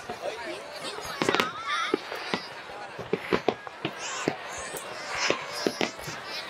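Aerial fireworks going off in an irregular run of sharp bangs and crackles, with people's voices and exclamations from the watching crowd in between.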